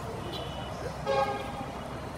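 A vehicle horn gives a short toot about a second in, over steady road traffic and street noise.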